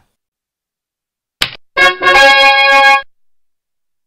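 Edited-in sound effect: a very short high swish, then a held musical note of about a second and a quarter, made of several steady tones together and cut off sharply.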